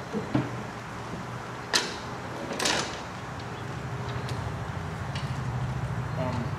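A few sharp knocks and a short scraping rattle against the steel hull and hatch of a TKS tankette as a man climbs into its open hatch.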